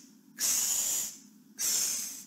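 A woman making hissing 'ksss' sounds with her mouth for the letter x: two long hisses about a second apart.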